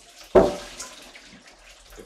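Hot water poured out of a saucepan into a steel kitchen sink, draining freshly blanched noodles: a sudden loud splash about a third of a second in, then running water that trails off.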